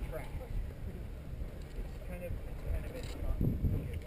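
Low wind rumble on the microphone, with faint voices talking a little way off; no engine is running.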